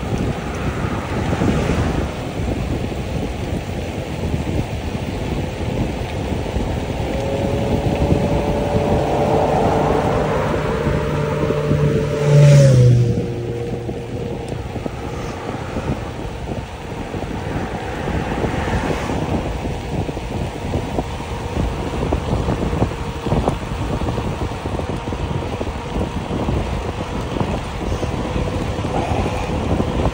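Wind rushing over the microphone of a moving bicycle, with a motor vehicle passing on the adjoining road: its hum builds to the loudest point about twelve seconds in, then drops in pitch as it goes by.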